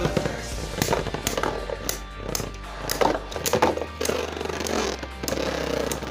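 Two Beyblade Burst spinning tops whirring and scraping around a plastic stadium, with repeated sharp clacks as they knock into each other and the stadium wall.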